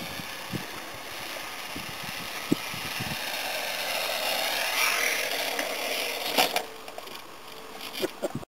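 Radio-controlled model airplane flying low past, its motor hum growing louder to a peak about five seconds in. It then drops away suddenly with a few sharp knocks as the plane comes down on the ground.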